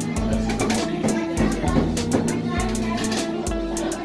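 Music with guitar and a steady drum beat.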